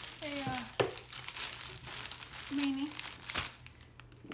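Plastic packaging crinkling and rustling in quick, irregular crackles as items are pulled out of a gift box and unwrapped.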